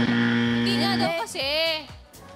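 Game-show buzzer: a steady, low electronic buzz that cuts off about a second in, followed by a short vocal exclamation.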